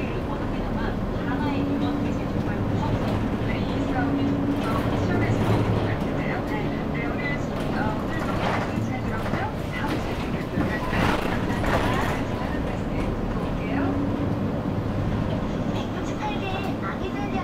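City bus cabin noise while driving: the bus's engine and road rumble, with a low hum that comes and goes a few times and indistinct talk in the background.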